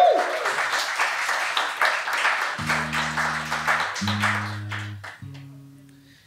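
Audience applause that slowly dies away, while an acoustic guitar is being tuned: from about halfway, three held notes of about a second each, at different pitches, are plucked and left to ring.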